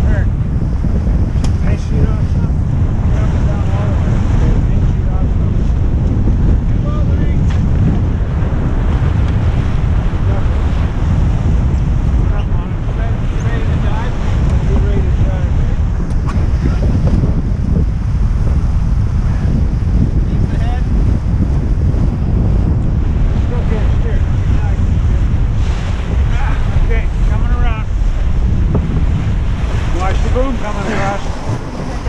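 Strong wind buffeting the microphone over water rushing and splashing along the hull of a heeled sailboat under way, a loud, steady rush.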